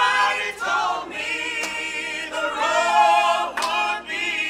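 Small mixed vocal ensemble of women's and men's voices singing together in harmony, unaccompanied, holding sustained notes with vibrato.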